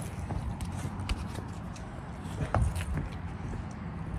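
Phone handling noise and footsteps as a person moves about with the phone in hand: a steady low rumble with scattered small knocks and one louder thump about two and a half seconds in.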